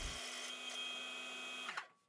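Sewing machine motor driving the bobbin winder at fast speed, a steady whine as the plastic bobbin fills with thread. It cuts off abruptly near the end.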